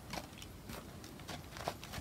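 Horse's hooves stepping slowly on packed dirt: a few soft, irregular footfalls.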